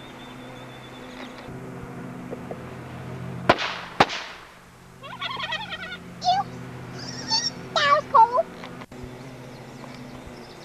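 High-pitched, sped-up cartoon voices of the toy carrot characters, one saying "Oops" and giggling "hee hee hee" in the second half. Before that come two sharp bangs about half a second apart, over a steady low hum.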